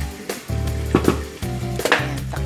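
Chicken pieces sizzling in a frying pan as a spatula stirs them through sautéed garlic, ginger and onion, with a few sharp scrapes of the spatula about a second in and near the end. Background music with low held notes plays underneath.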